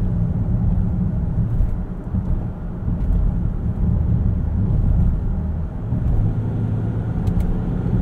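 The 2018 Land Rover Discovery's turbodiesel V6 pulling under power, heard from inside the cabin as a steady low drone mixed with road noise, with a brief dip in loudness about two seconds in.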